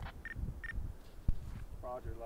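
Two short high beeps from a handheld two-way radio, followed near the end by a faint voice beginning to answer the radio check over a radio speaker.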